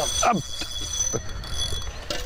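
Fishing reel being cranked in against a hooked catfish, its mechanism ticking faintly.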